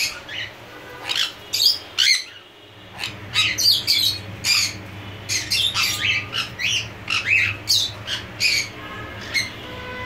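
Jenday conure giving short, shrill squawks in quick succession, with a brief pause about two seconds in.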